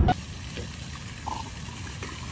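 Water sloshing with small splashes from a dog swimming: a soft, even watery hiss with light scattered clicks.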